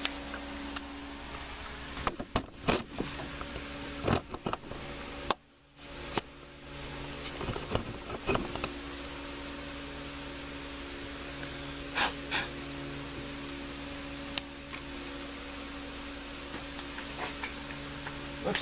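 Steady hum of a shop fan, with scattered light clicks and taps from small carburetor parts being handled on a workbench.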